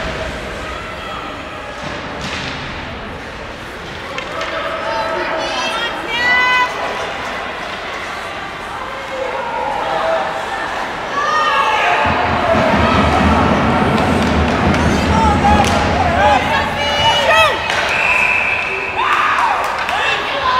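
Ice hockey arena sound: spectators shouting and calling out, with thumps of the puck and players against the boards. The noise grows louder and denser about twelve seconds in.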